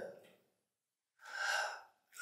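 A man's sharp in-breath, picked up close by a microphone, lasting under a second about halfway in. It falls between spoken phrases, with the last word trailing off at the start.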